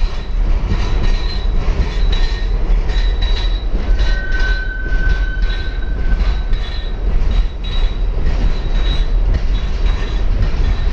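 Freight train boxcars rolling past: a steady heavy rumble with wheel clatter, and a thin, high wheel squeal held for about two seconds near the middle.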